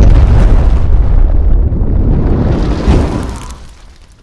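Explosion-style boom sound effect for a logo animation: a deep rumbling blast that starts suddenly, with a second hit about three seconds in, then fades out.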